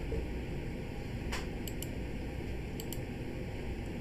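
Steady room noise with a low hum, like a running fan, and a few faint short clicks about a second and a half in and again near three seconds.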